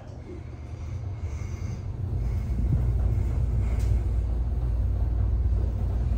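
Northern traction elevator car starting off and travelling upward, heard from inside the cab: a low rumble that swells about two seconds in and then holds steady.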